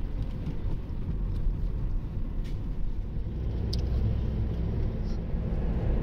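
Steady low rumble of a car driving, its engine and tyres heard from inside the cabin.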